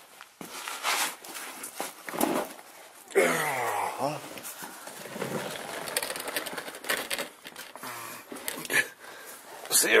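Rustling, scraping and light knocks of handling while moving around under a truck, with a man's low voice murmuring without clear words a few seconds in.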